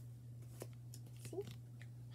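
Faint handling of glued paper cutouts being squeezed together: a few soft crinkles and clicks, over a steady low hum.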